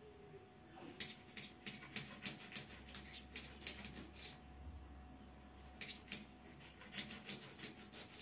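Faint, quick clicks and taps of a knife slicing a lemon on a tiled floor, the blade ticking against the tile. The clicks come in two runs, the first starting about a second in and the second near six seconds.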